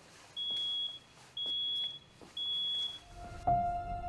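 Smoke alarm sounding three high-pitched beeps, about one a second, set off by smoke. Music with a low rumble starts near the end.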